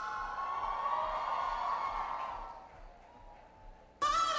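A sustained synth chord from a stage keyboard dying away over about three seconds into near silence, with the music starting again suddenly at the very end.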